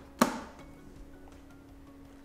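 A single sharp plastic click with a brief ring as the side cover of an Epson ColorWorks C3500 label printer snaps back into place, followed by a faint steady hum.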